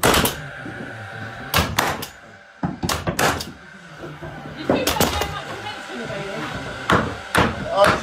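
Cordless nail gun firing nails into plywood floor sheeting: about ten sharp shots, several in quick pairs, a second or two apart. A faint steady whine sounds between the shots for the first few seconds.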